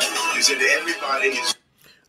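Background music with a voice over it, from a video being played back; it cuts off suddenly about one and a half seconds in.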